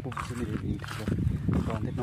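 A man's voice talking, with a steady low hum underneath.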